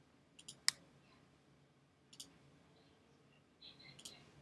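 Computer mouse buttons clicking a few times in short bursts, with the sharpest click about three-quarters of a second in and more just after two seconds, over faint room tone.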